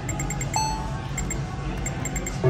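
Bonus Poker Deluxe video poker machine making its electronic game sounds: a run of rapid short ticks, about five a second, and a single short beep about half a second in, as the win is credited and a new hand is dealt. A steady low hum runs underneath.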